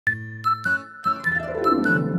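Logo intro jingle: a quick run of bright chiming, bell-like notes, with a downward swoop in the second half.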